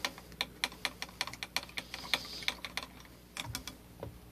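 A quick, uneven run of light clicks, about five a second, easing off briefly about three seconds in before a few more.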